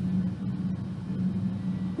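Steady low background hum.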